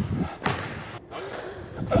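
Basketball coming down after a shot and bouncing on a hardwood gym floor: two sharp thuds about half a second apart, with another impact near the end.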